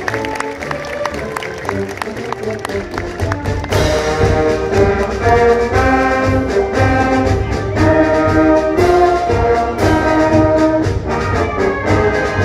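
Live wind band playing: a quieter passage of held notes over a steady ticking percussion beat, then the full band with brass comes in loudly about four seconds in, in rhythmic accented chords.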